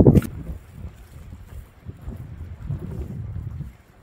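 Wind buffeting the microphone outdoors, an uneven low rumble that rises and falls in gusts, after a short sharp thump at the very start.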